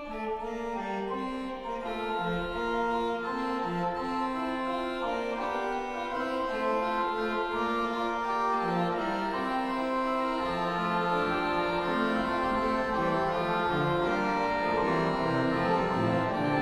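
Pipe organ playing a Baroque contrapuntal piece, several lines of held and moving notes at once, growing slowly louder, with low pedal notes coming in near the end.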